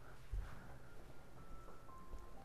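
Quiet indoor room tone with a single soft, low thump about a third of a second in, and a faint thin tone near the end.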